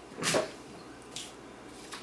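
A small cardboard product box being picked up and moved off a tabletop: a short scuff near the start, then a faint light rustle about a second in.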